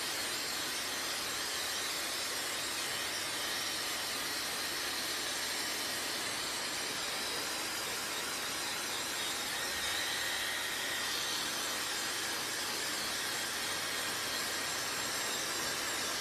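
Handheld electric hair dryer running steadily, blowing air onto a child's hair: an even rushing hiss with a faint high whine.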